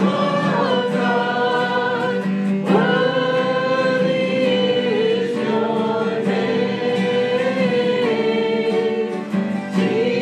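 Congregation singing a hymn in unison, with long held notes, accompanied by two strummed acoustic guitars.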